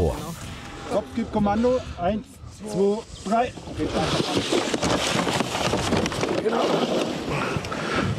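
Men's voices talking briefly and unclearly, then a loud, steady rushing noise over the last four seconds.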